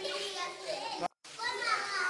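Children's voices, with a brief break into silence just after a second in.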